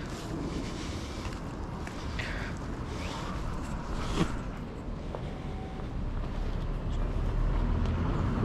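Street traffic: a low, steady rumble of road vehicles, growing louder near the end as a car approaches.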